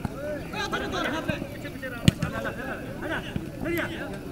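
Players and onlookers calling out on an open pitch, with one sharp thud about two seconds in: a football being kicked.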